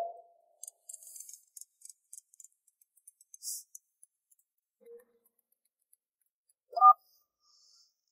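Faint rustling and light clicks of paper and small objects being handled in an open suitcase. A short, rising pitched sound comes near the end.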